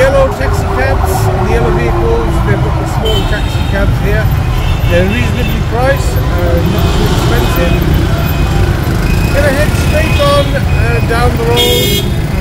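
Dense city traffic heard from inside a moving vehicle, with a steady rumble of engines and road noise, car horns tooting and people's voices. A horn sounds near the end.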